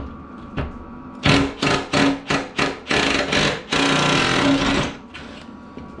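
Milwaukee M18 cordless impact driver hammering on a rusted door-hinge bracket bolt in a string of short bursts, then one longer run of about a second. The bolt is seized and snaps partway down rather than backing out.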